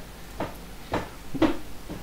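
Three short clicks or knocks about half a second apart, over a faint low hum.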